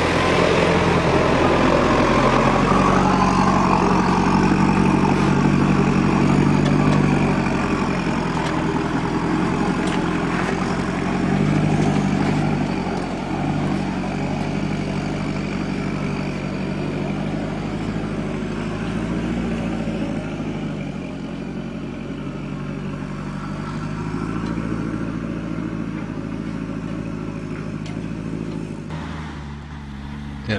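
Four-wheel drive's engine pulling steadily up a steep, rocky climb in first gear low range. It swells louder over the first several seconds and again about eleven seconds in, then eases off.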